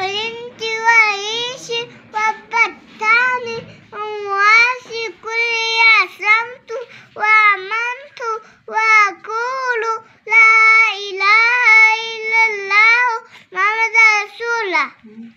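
A toddler girl reciting in a high sing-song chant: short melodic phrases, each bending up and down, with brief breaths between them.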